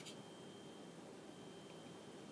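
Near silence: faint room tone with a thin, steady high-pitched tone underneath.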